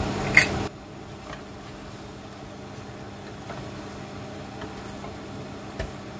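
Low, steady hiss of a tomato and prawn curry cooking in the pan, over a faint fan hum. A sharp click comes a moment in, the sound drops quieter just after, and a few soft clicks of the wooden spatula follow.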